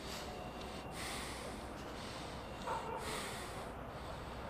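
A person breathing heavily through the nose: three long, noisy breaths, like someone upset and holding back tears.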